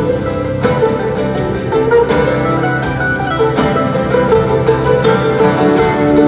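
Live band playing an instrumental passage of a folk-rock song, with drums and guitars.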